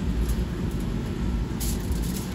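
Steady low rumble of kitchen machinery, with brief crinkling of paper and aluminium foil near the end as a sandwich is laid on them for wrapping.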